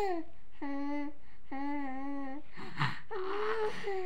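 A voice cooing in a string of drawn-out, level vowel-like notes, four or five of them with short gaps, and a brief breathy puff partway through.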